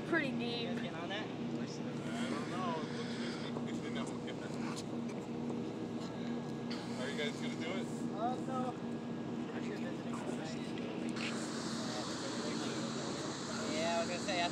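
A boat engine running at a steady hum, with faint voices of people nearby. About eleven seconds in, a hiss of wind or water comes in over it.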